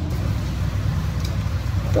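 Double-decker sightseeing bus on the move, heard from its upper deck: a steady low rumble of engine and road noise.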